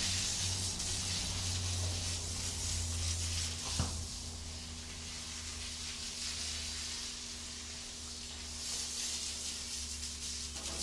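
Water spraying from a garden hose nozzle onto a horse's wet coat: a steady hiss that eases off in the middle and picks up again near the end, over a low steady hum.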